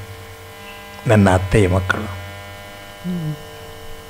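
Steady electrical mains hum from the recording chain, with a short spoken phrase about a second in.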